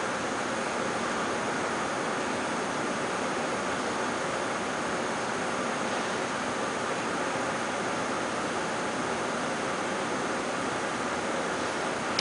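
Steady, even hiss with a faint steady hum under it, unchanging throughout.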